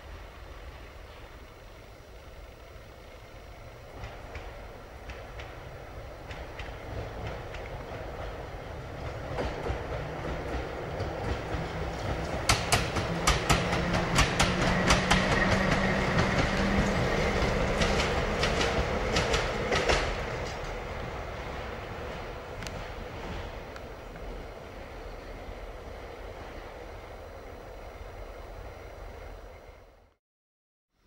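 Riga-built RVZ-6 two-car tram train passing on its track. It approaches with a rising rumble and hum, its wheels clicking loudest a little before midway, then it fades away.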